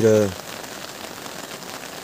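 Steady rain falling, heard as a continuous even hiss.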